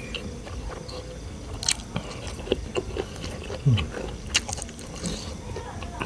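A person chewing food close to the microphone: irregular wet smacks and clicks of the mouth, with a brief low hum from the eater about two-thirds of the way through.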